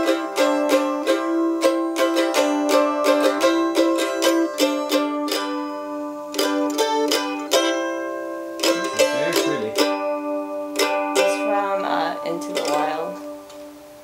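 Mandolin picked in a quick run of bright single notes that thins out in the second half and trails off near the end.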